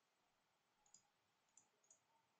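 Near silence with three faint, short clicks of a computer mouse, about a second in and again near the end.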